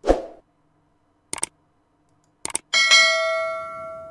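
Subscribe-button overlay sound effect: a short falling sweep, two sharp clicks about a second apart, then a bright notification-bell ding that rings on and fades over about a second and a half.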